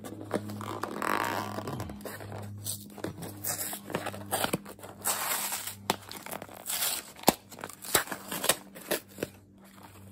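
A small cardboard box being handled and its sealed flap picked at and pulled open: irregular cardboard scraping and rustling with sharp little clicks and tears.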